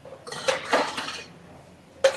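Metal cocktail shaker tin and glassware being handled on a bar counter: a short clatter with a few sharp clinks in the first second, then quieter.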